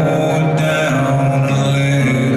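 Live acoustic song: a man sings long held notes over acoustic guitar.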